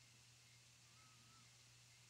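Near silence: faint room tone, a low steady hum under a light hiss.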